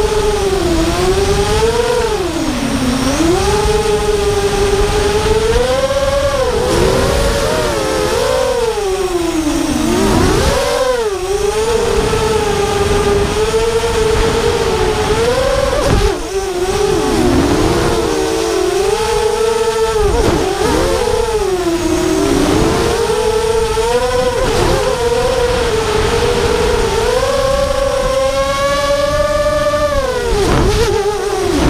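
FPV freestyle quadcopter's four brushless motors and propellers whining. The pitch swoops up and down constantly with the throttle through rolls and dives, over a rushing noise. Near the end the whine climbs steadily higher.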